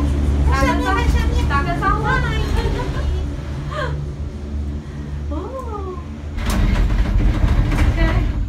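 Gondola cabin noise heard from inside the cabin: a steady low hum, then from about six seconds in a louder rumbling as the cabin runs into the station.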